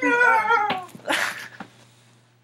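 A high-pitched vocal wail whose pitch wavers and bends, with no words, followed about a second in by a short breathy burst, then fading out.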